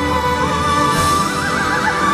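Soprano voice singing a high held note with vibrato, which steps up a little past midway into a wider, wavering trill-like line, over orchestral accompaniment with cello, heard through an arena PA.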